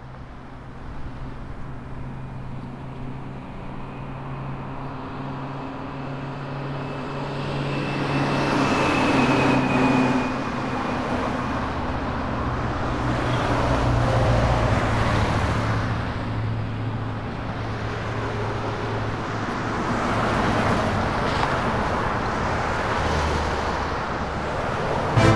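Road traffic: vehicles passing one after another on a nearby road, each swelling and fading, over a steady low hum.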